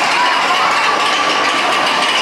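Steady mechanical running of a spinning chair swing carousel, mixed with a din of riders' and onlookers' voices and a drawn-out high shriek or whine.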